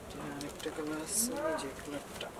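Faint background talk, with a short hiss about a second in.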